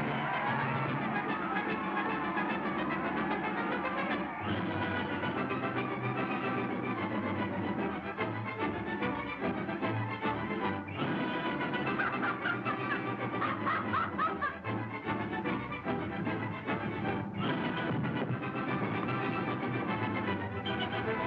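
Orchestral film score with prominent brass.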